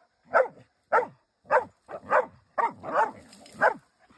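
Hunting dogs barking in a steady run of about seven short barks, one every half second or so, as they trail a coyote.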